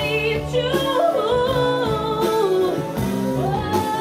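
Live funk-soul band: a woman sings a lead vocal line that slides between held notes, over the band's electric guitar, bass and drums.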